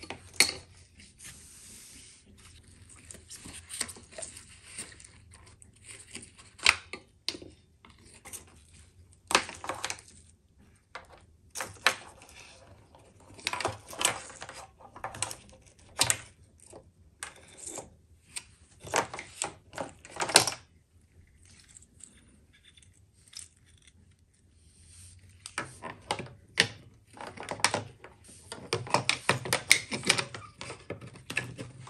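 Irregular sharp plastic clicks and clatter from a headlight wiring harness being pried loose from its clips and sockets on a plastic headlight housing with a small screwdriver and gloved hands.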